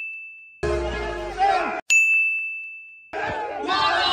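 A bright bell-like ding sound effect rings out and fades, then comes a second of party audio (voices and music), and a second identical ding about two seconds in, fading before the party audio returns near the end.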